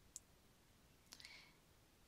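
Near silence with a faint sharp click just after the start, then another faint click with a brief soft rustle about a second in.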